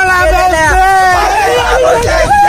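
A group of young men shouting and cheering excitedly at close range, several loud voices overlapping.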